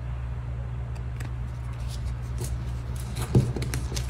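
Paper die-cut stickers handled and set down on a table: faint rustles and light clicks, with one louder tap a little past three seconds in, over a steady low hum.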